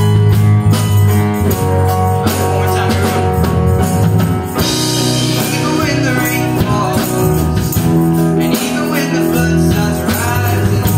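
A live band playing: strummed acoustic guitar over an electric bass line, with a jingling tambourine and some singing.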